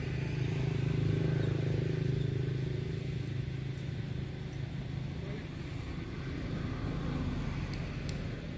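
A motor engine running nearby, a low steady hum that swells over the first two seconds and fades away after about four.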